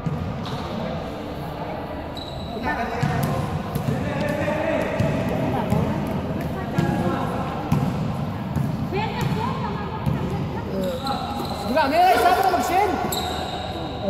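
A basketball bouncing on an indoor court during a game, mixed with players' and onlookers' shouting and talk. The voices grow louder near the end.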